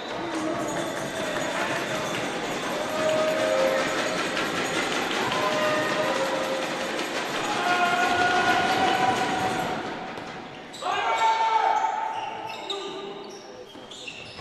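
Gym sound during a volleyball point: a steady murmur of voices from the crowd and players, with short squeaks and calls over it. There is a louder burst about eleven seconds in, as the rally gets going.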